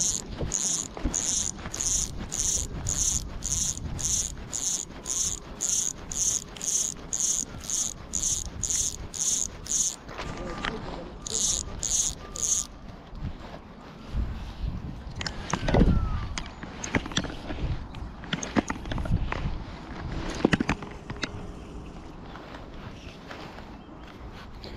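Fly line being stripped in by hand through the rod rings on a fly rod: a quick, even run of short hissing strokes, about two or three a second, for roughly ten seconds. After a short pause there are three more strokes, then a few low knocks of rod handling.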